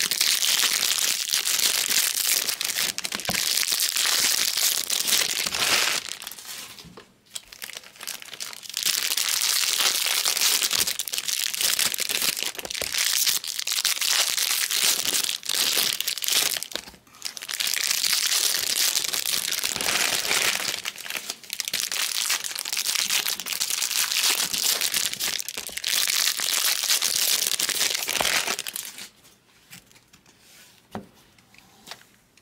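Wrappers of 2022 Bowman Draft Jumbo baseball card packs crinkling and tearing as the packs are ripped open by hand. The crinkling comes in long stretches with a few short pauses and stops just before the end.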